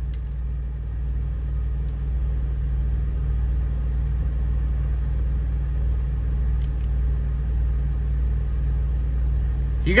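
Semi truck's diesel engine idling steadily, heard inside the cab of a 2022 International as an even, low hum, with a couple of faint clicks.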